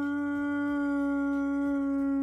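A woman's voice holding one long, steady 'ooh' at a single pitch, acting out falling down the stairs in slow motion.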